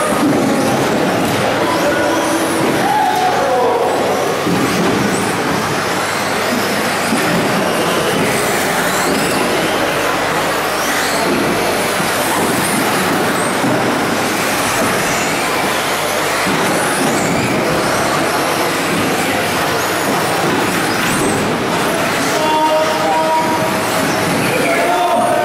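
1/10-scale two-wheel-drive electric off-road RC buggies racing on an indoor carpet track: a steady din of small motors, gears and tyres, with high motor whines that rise and fall as the cars speed up and slow down.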